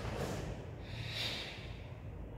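Forceful breathing of a karateka performing kata: a quick burst of breath just after the start, then a longer hissing exhale about a second in, timed with the techniques. A steady low hum of the room runs underneath.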